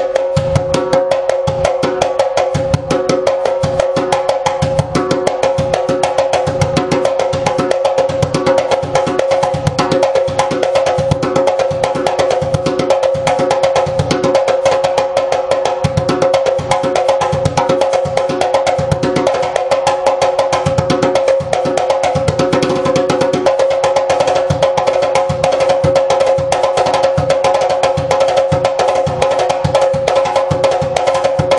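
Cowhide-headed djembe played by hand in a fast, continuous rhythm: an unbroken stream of slaps and tones over a steady ringing note from the drum head. The cowhide head gives a less explosive but much cleaner sound.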